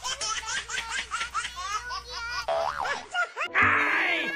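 A rapid, high-pitched run of laughter, 'ha-ha-ha' repeated several times a second, for about two and a half seconds. Near the end a loud, wobbling comic 'boing'-type sound effect comes in.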